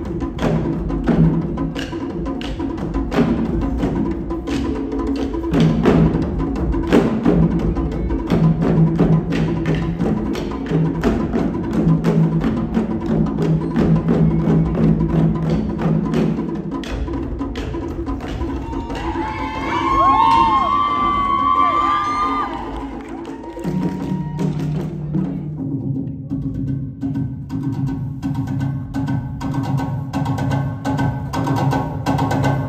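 Drum music: sticks striking wooden drums in a fast, driving rhythm over a steady low bass line. About twenty seconds in, a high gliding call rises over the drumming.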